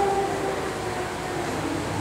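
Steady, even background hum of room and microphone noise in a hall, with the voice trailing off right at the start.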